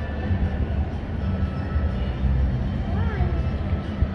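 Busy restaurant room noise: a steady low hum with faint chatter from other diners.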